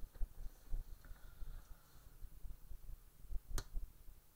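Faint handling of a plastic Mega Construx brick assembly turned in the hand, with one sharp plastic click about three and a half seconds in.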